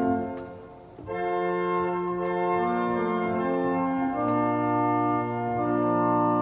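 Church organ played at the console: held chords, the first released just after the start and dying away in the room before the next chord comes in about a second in, then chords changing every second or two.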